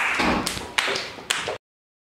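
A group's applause dying away into a few scattered claps, then the sound cuts off abruptly about one and a half seconds in.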